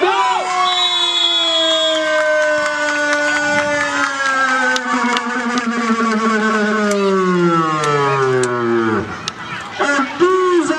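A man's long drawn-out goal shout, typical of a football commentator, held in one breath for about nine seconds with its pitch sinking steadily before it breaks off near the end.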